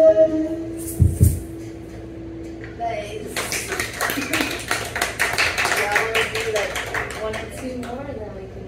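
A fiddle's held final note, with the band's last chord, dies away just after the start, and two low thumps follow about a second in. From about three seconds in, a small audience applauds for about four seconds.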